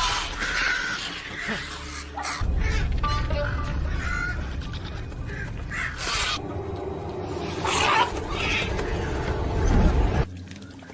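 Film soundtrack of music and sound effects: a deep low rumble under the score, with several sudden loud surges in the last half.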